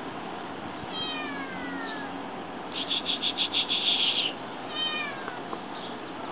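Bengal kitten meowing twice, plaintively, each call falling in pitch: a drawn-out one about a second in and a shorter one near the end. Between them comes a rapid high-pitched trill of about eight quick pulses, the loudest sound.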